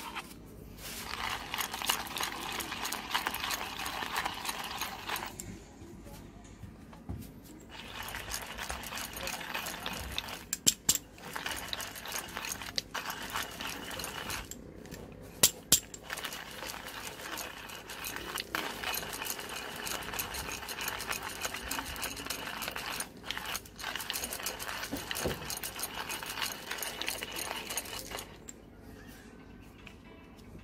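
Hand-cranked burr coffee grinder grinding beans at a fine setting: a steady gritty, crackling rattle that pauses for about two seconds after the first five seconds, then runs on with two brief bursts of sharp clicks, the loudest sounds, and stops shortly before the end.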